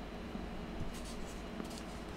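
Faint paper rustling and scraping as a small pad of sticky notes is handled.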